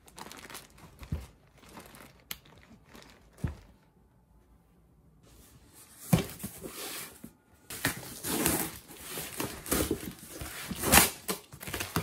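A cardboard parcel being unboxed: after a few light knocks, about halfway through come busy rustling and crinkling as the box is opened and plastic-wrapped items are pulled out of it.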